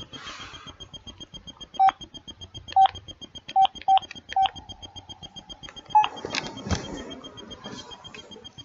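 Smartphone keypad tones as a phone number is tapped in: five short, loud beeps at uneven intervals, then a fainter steady tone for about a second and a half, and another beep about six seconds in. Near the end comes a rustle of the phone being handled.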